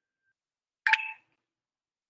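A single short ping with a sharp start about a second in, lasting under half a second, in otherwise silent audio.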